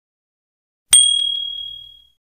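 A single bright bell ding about a second in, ringing out and fading away over about a second.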